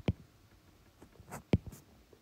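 Stylus tapping and scraping on a tablet screen while handwriting a word: a few short, sharp ticks, the loudest about a second and a half in.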